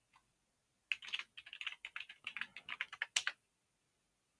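Computer keyboard typing: a quick run of about a dozen keystrokes starting about a second in, with the last stroke the loudest.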